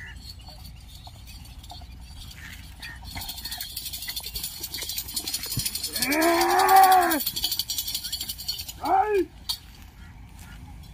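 A bull team hauling a wooden drag log passes close by: a high, rattling jingle builds from about three seconds in and stops near the end. Over it comes a long shouted call that rises and falls in pitch about six seconds in, the loudest sound, and a short one about nine seconds in.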